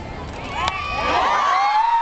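A bat strikes the ball once, a sharp crack about two-thirds of a second in, and the crowd breaks into cheering and screaming that swells toward the end.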